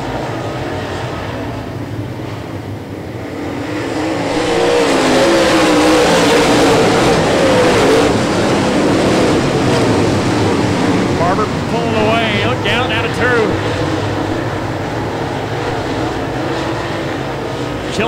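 Pack of dirt super late model race cars with V8 engines running at racing speed, the engine noise swelling from about four seconds in and loudest around six to eight seconds in before easing off.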